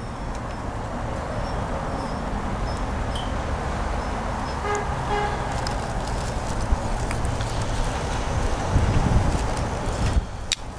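Steady rumbling noise of motor-vehicle traffic, slowly growing louder toward the end, with a short pitched tone about five seconds in.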